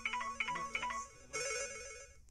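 A phone ringtone playing a short melody of quick electronic notes in repeated phrases.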